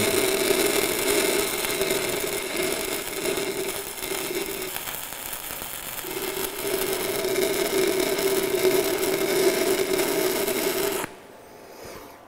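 Stick-welding (SMAW) arc of an E6010 electrode crackling steadily, with a low hum under it, during a root pass on 4-inch steel pipe at about 75 amps. The arc breaks off suddenly about a second before the end.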